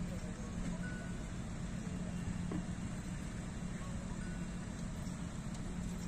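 Open inspection jeep's engine idling: a steady low hum and rumble.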